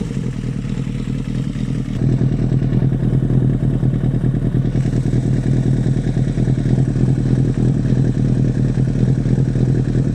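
2008 Kawasaki ZX-6R's inline-four engine idling steadily through a Two Brothers aftermarket exhaust, a fast, even burble with no revving. It gets a little louder about two seconds in.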